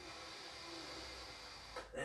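Faint steady hiss of room tone, with no distinct sounds.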